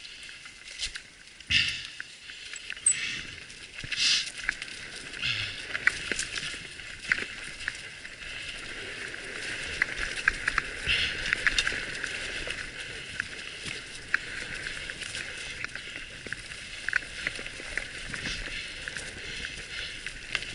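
Bicycle tyres rolling over a dirt trail strewn with dry leaves: a steady crunching hiss with many small clicks and rattles from the bike, and a few louder crunches.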